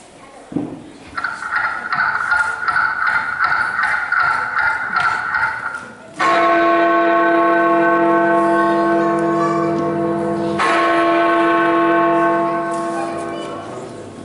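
Bells ringing: a few seconds of rapid, higher-pitched ringing, then a deep church bell struck twice, about four seconds apart, each stroke ringing on and dying away slowly.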